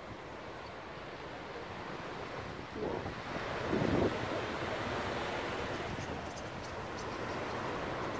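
Rushing whoosh of wings from a large murmuration of common starlings flying overhead: a steady hiss that swells about three seconds in, is loudest around four seconds, and stays louder after.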